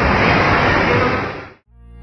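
Steady rushing noise of water spraying and falling, fading out about a second and a half in. Electronic music with a deep bass line starts near the end.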